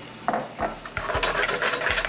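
Frozen mixed vegetables sizzling in a hot skillet, the hiss swelling about halfway through, with a few light knocks as the pan is handled on the burner grate.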